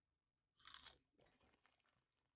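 A person crunching and chewing a crunchy snack, one brief crunch a little over half a second in and otherwise near silence.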